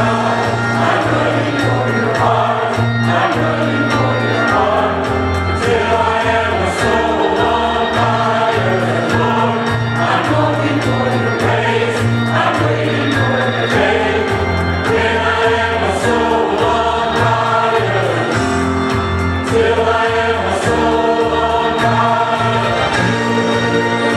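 Mixed church choir singing a gospel song over instrumental accompaniment with a steady, stepping bass line.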